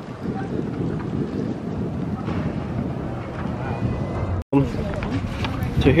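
Wind buffeting the camera microphone with a fluttering low rumble, with faint voices of people in the background. The sound drops out for an instant about four and a half seconds in.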